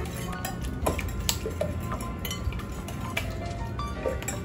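Metal wire whisk beating eggs in a glass mixing bowl, its wires clinking against the glass in irregular clicks.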